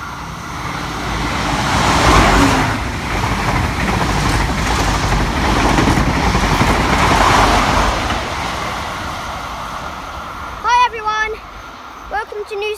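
NSW TrainLink XPT passenger train passing through the station at speed: a loud rush of wheels on rail and engine noise that builds, peaks twice as it goes by, and fades away after about eight seconds.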